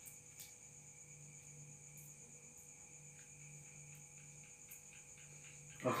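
Faint, sparse ticks of a rooster's beak pecking egg and tomato off a plate, over a steady high chirring of crickets and a low hum.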